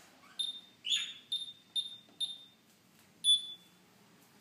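A series of six short, high-pitched chirps: the first two slide up into a steady whistle, the next few come about twice a second, and a louder single chirp comes near the end.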